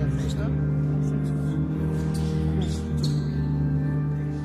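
Church organ playing slow held chords with a deep bass, the notes shifting about three seconds in.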